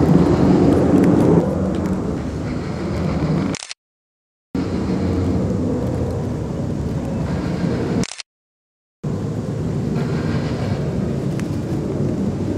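Steady low rumble of outdoor background noise on a handheld camera's microphone, cut off twice by a sudden drop to total silence lasting under a second.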